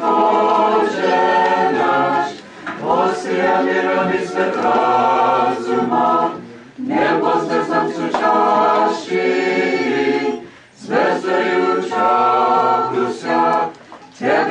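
Small a cappella choir singing an Orthodox Christmas carol in phrases of about four seconds, each broken by a short breath.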